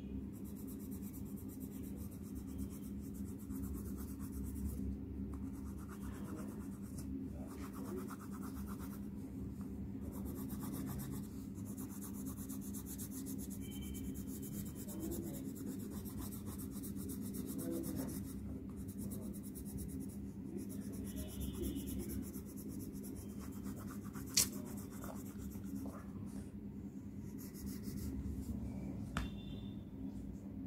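Coloured pencil scratching on paper in repeated shading strokes, over a steady low hum. One sharp click about two-thirds of the way through.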